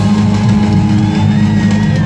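Live rock band playing loudly, with sustained bass notes under guitar, keyboards and drums, and a gliding high lead line about a second in.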